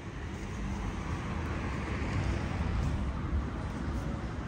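Street traffic noise: a vehicle's rumble and tyre hiss swelling as it passes, loudest about three seconds in, then easing off.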